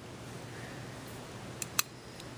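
Quiet handling of the steel parts of an AR-15 bolt carrier group just after the firing pin has been taken out, with two light metal clicks about one and a half seconds in.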